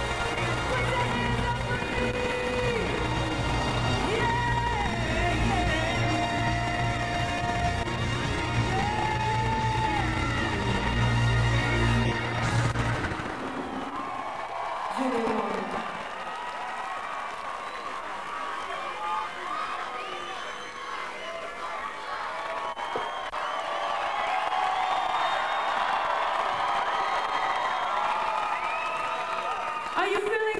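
Live band with a female lead vocal playing to the end of a song, the music stopping abruptly about 13 seconds in. A large audience then cheers, whoops and whistles for the rest of the time.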